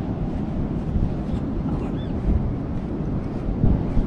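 Wind buffeting the microphone: a steady, rumbling noise that is loudest in the low end.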